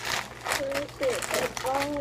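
A plastic snack bag crinkling as it is handled, under children's voices.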